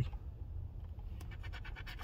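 Scratch-off lottery ticket being scratched: a run of quick, short scratching strokes on the ticket's coating, starting about a second in.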